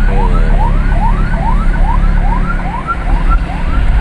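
Emergency siren wailing in short rising whoops, about three a second, heard from inside a moving car over the steady low rumble of road and engine.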